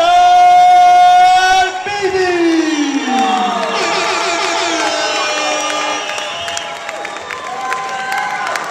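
A ring announcer's amplified voice holds one long drawn-out call for nearly two seconds, then slides down in pitch, as a crowd cheers and shouts over it. The cheering and shouting carry on through the rest.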